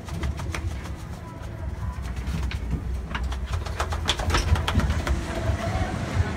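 Low rumble of wind and handling on a phone microphone while walking outdoors, with many small knocks and clicks from the phone being handled and footsteps, and faint voices in the background.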